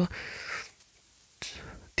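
Soft breath noise between spoken sentences: one breath at the start, then a second, shorter one about one and a half seconds in, with a near-quiet gap between them.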